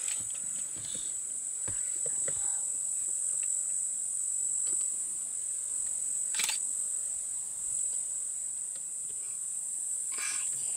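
Steady high-pitched drone of calling insects, one unbroken shrill band, with a single short click about six and a half seconds in.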